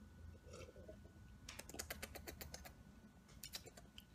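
Faint swallowing sounds of a person drinking a thick green smoothie from a blender cup. A run of quick soft clicks comes about a second and a half in, and a few more near the end.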